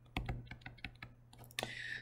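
A quick, uneven run of light clicks, about ten in a second and a half, then a brief soft hiss near the end.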